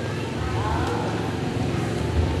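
A low, steady rumble, with faint voices behind it.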